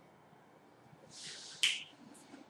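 A short in-breath about a second in, followed by a single sharp mouth click, from a man pausing mid-sentence.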